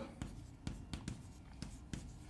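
Chalk writing on a blackboard: a run of faint, irregular chalk taps and short scratching strokes as a word is written.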